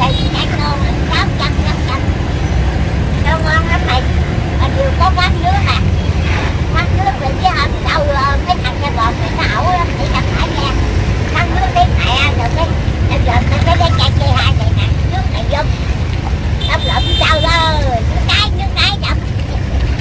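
Steady street traffic noise from motorbikes and cars passing on a busy road, with people's voices talking over it throughout.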